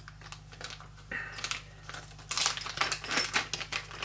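Small plastic parts bag crinkling while a hand fishes red metal suspension links out of it, with light clicks and clinks of the parts. The irregular crackling starts about a second in and is busiest in the second half.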